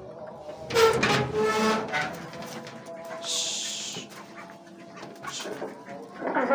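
A short animal call about a second in, over steady background music, with a brief hiss around three seconds in.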